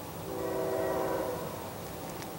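Distant locomotive horn: one blast of a little over a second, several tones sounding together.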